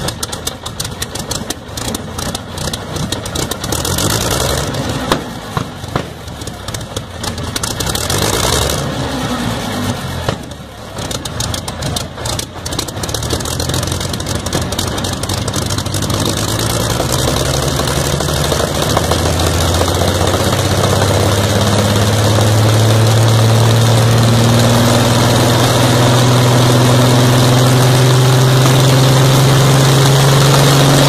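Rolls-Royce Griffon Mk 58 V12 aero engine, 36.7 litre, running on a test trailer with its propeller turning. It fires raggedly with sharp pops for the first half. From about 18 seconds it settles into a smooth, steady note that slowly rises in pitch as the engine picks up speed.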